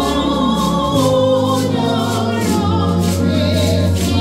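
A congregation singing a gospel hymn together over instrumental accompaniment with a steady beat.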